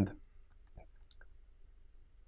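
A few faint, short clicks in a quiet pause, clustered about a second in.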